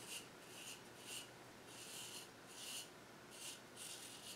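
Single-edge Micromatic Clog Proof safety razor scraping through stubble on a lathered neck, faint short strokes about two a second. The crisp scratch of each stroke shows the blade is still cutting very well.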